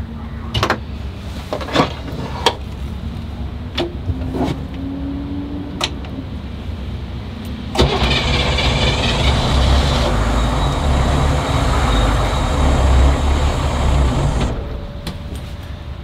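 Starter motor cranking the 1991 Hummer H1's V8 diesel for about seven seconds from about eight seconds in, with a pulsing beat. The engine doesn't catch and the cranking stops, a failed restart. Before it, a few sharp clicks sound over a low rumble.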